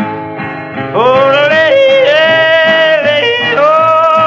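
A man yodeling without words in the blue-yodel style, his voice sliding up about a second in and flipping between held notes, over steady strummed acoustic guitar.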